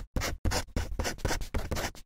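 Rapid scratchy strokes, about six a second, like a pen scribbling on paper: an edited-in scribbling sound effect.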